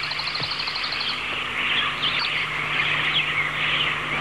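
Songbirds chirping in a dense outdoor chorus, with a rapid high trill in the first second.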